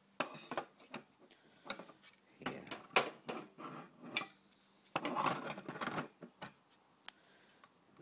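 Hard plastic clicks, knocks and rustling as red plastic fire-alarm sounders are picked up and shifted about in a cardboard box, with a longer spell of clatter about five seconds in. The sounder itself is not sounding.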